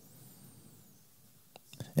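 A quiet pause in a man's speech into a close microphone: faint room hiss, then a few soft mouth clicks near the end just before he speaks again.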